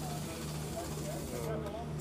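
Faint voices of people talking over a steady low engine hum.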